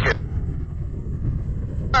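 Strong wind buffeting the microphone: a steady, gusty low rumble.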